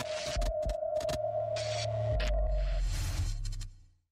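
Electronic sound-design sting for an animated logo intro: a steady high electronic tone with short crackling glitch bursts over it, then a deep bass drone that swells a little after two seconds. The tone stops before three seconds and the bass fades out near the end.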